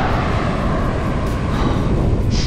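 Wind rushing and buffeting on the microphone of a camera mounted on a moving bicycle, with road and traffic noise underneath.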